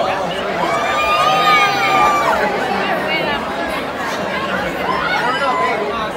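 Party crowd in a hall chattering over one another, with one voice holding a long drawn-out call about a second in.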